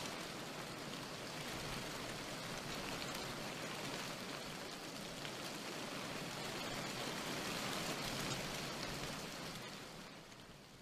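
Faint, steady rain ambience: an even hiss of rain with light drop ticks, fading out near the end.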